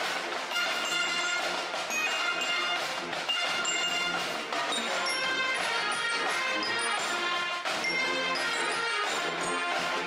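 Brass band music with held, sustained chords and several notes sounding together.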